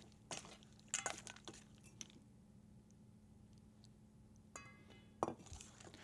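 Faint clinks of a utensil and ice cubes against a stainless steel mixing bowl as a lemon vinaigrette is stirred: a few scattered clinks, a pause, then a short ringing clink near the end.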